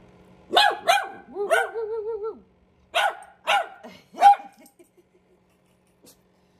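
Small dog barking back at its owner: two sharp barks, a drawn-out wavering whine, then three more barks, the last the loudest.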